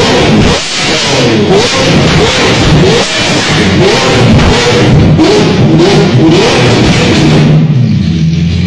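Liberty Walk–modified Lamborghini engine revved in a quick series of short throttle blips, each a rising note that drops away, about one every second or less, mixed with loud music.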